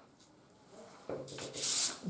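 A wooden ruler being slid and rubbed across cloth on the cutting table: a short scraping rub that starts about a second in and gets brighter near the end.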